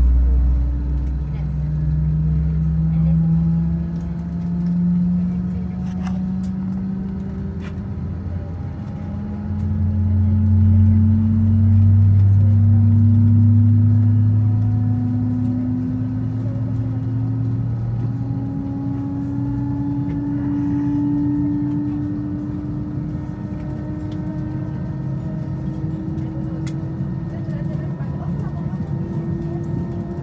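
Airliner's jet engines heard from inside the cabin: a deep rumble under a whine that rises slowly and steadily in pitch as the engines spool up for takeoff.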